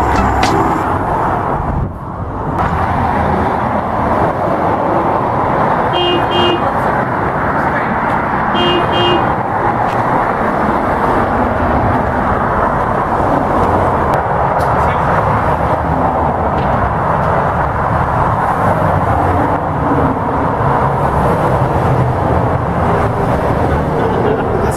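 Steady highway traffic noise from multi-lane traffic. A vehicle horn gives two quick double beeps, about six seconds in and again about nine seconds in.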